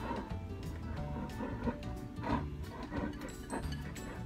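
Soft instrumental background music with held notes, under faint taps and scrapes of a utensil stirring batter in a bowl.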